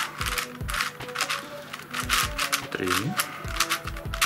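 Plastic MF8 Crazy Unicorn twisty puzzle being turned quickly by hand, its layers clicking and clacking in a rapid, uneven series as a short move sequence is repeated. Soft background music runs underneath.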